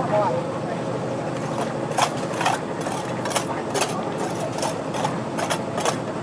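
A steady engine drone runs throughout. From about two seconds in comes a string of sharp scrapes and clinks, a trowel working wet concrete over broken stone.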